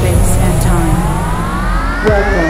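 Electronic intro sound design: a synthesizer riser sweeping steadily upward in pitch, with a second sweep joining about half a second in, over a low steady drone.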